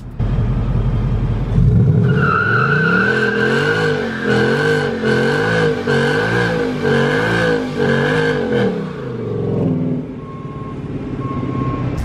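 2018 Ford Mustang GT's 5.0-litre V8 doing a line-lock burnout: with the front brakes locked, the engine revs up about two seconds in and its pitch rises and falls over and over as the rear tyres spin and squeal on the concrete. About ten seconds in it drops back to idle.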